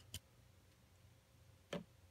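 Two short clicks of baseball cards being handled, a card moved off a stack, about a second and a half apart, the second one louder, over near silence.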